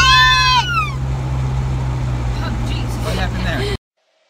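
A child's high, drawn-out vocal cry, rising and falling, lasts about the first second. Under it runs the steady low rumble of a moving car's cabin. All sound cuts off abruptly just before the end.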